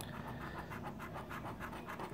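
A large coin scratching the coating off a scratch-off lottery ticket in quick back-and-forth strokes, about ten a second.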